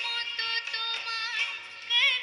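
A woman singing a Bengali song into a microphone over instrumental accompaniment, holding notes that waver and bend in pitch.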